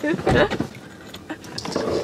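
Brief bursts of a woman's voice and laughter with no clear words: a loud vocal burst at the start and a breathy one near the end.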